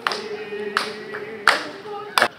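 A group of people clapping together, sharp claps roughly every three-quarters of a second, over a steady held tone.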